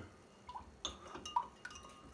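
A few faint, short clinks and taps, about five over two seconds, as a plastic funnel is fitted into the neck of a glass swing-top bottle.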